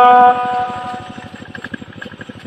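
A singer's long held note in a Red Dao hát lượn folk song ends about a third of a second in. What follows is much quieter: a fast, even low pulse, like a soft rattle, runs until the next phrase.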